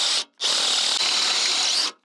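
Cordless DeWalt 20V drill boring a bolt hole through a steel tractor grill guard: a brief burst, then a steady run of about a second and a half.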